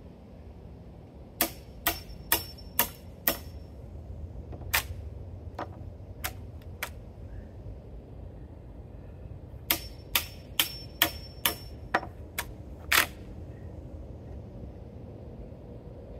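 Hammer striking a wood chisel, clearing the saw-kerfed waste from a notch in a white oak timber: sharp strikes with a faint metallic ring, in two runs of quick blows at about two a second with a few single taps between, over a steady low rumble.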